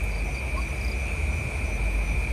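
Crickets trilling steadily as one continuous high note, with fainter short chirps above it, over a low steady hum.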